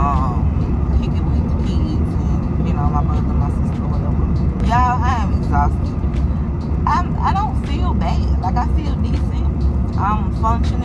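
Steady low road and engine rumble inside a moving car, with a voice singing in short snatches a few times over it.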